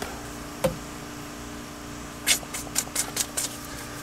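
Light clicks and ticks from handling a plastic radar detector on its suction-cup mount: one click about a second in, then a quick run of about seven ticks a little past the middle, over a steady low hum.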